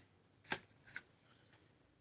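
Quiet handling noise of soap bars and their paper packaging: one short, sharp rustle about half a second in, then a smaller one just before a second in.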